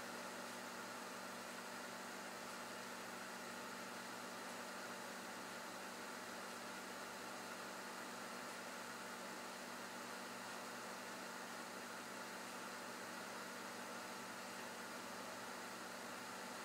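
13.56 MHz solid-state Tesla coil (HFSSTC) running continuously, its flame-like arc giving a steady, faint hiss with a faint even hum in it.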